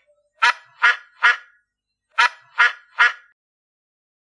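Duck quacking: two runs of three short quacks, with a pause of about a second between them.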